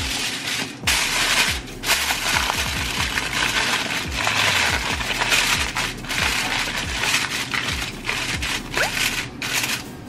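Aluminium foil crinkling and rustling as a sheet is laid over a foil baking pan and crimped around its rim by hand, over background music.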